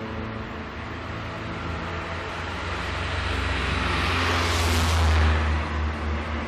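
A car driving past close by: engine and tyre noise build up over a few seconds, peak about five seconds in as it passes, then fall away, over a steady low engine hum.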